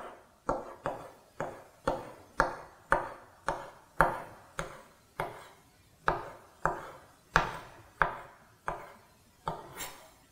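Kitchen knife slicing button mushrooms on a wooden cutting board: a steady run of short knocks of the blade on the board, about two a second, with a brief pause about halfway.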